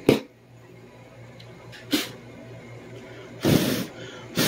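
A person blowing short puffs of air onto a subwoofer cone: three breathy puffs, the last and longest near the end. The air moves the cone, which makes the voice coil's resistance reading on the meter jump.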